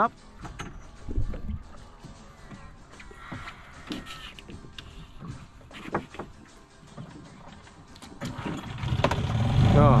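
A boat's outboard motor starts on the first try about eight and a half seconds in, then runs in a steady low idle. Before that there are scattered knocks and clunks of someone moving about in the boat.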